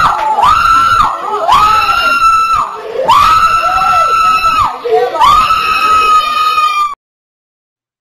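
A woman shouting into a microphone in a series of long, high-pitched cries, about five of them, each held up to a second. The cries cut off suddenly about seven seconds in.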